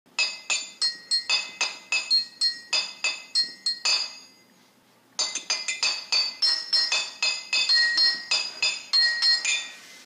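Intro jingle of bright, glassy, bell-like notes struck in quick succession, about four a second. It breaks off for about a second midway, then resumes a little denser until the host speaks.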